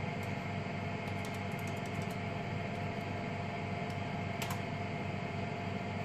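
Steady hum of running lab equipment and cooling fans with one held mid-pitched tone, and a few faint clicks, one about four and a half seconds in.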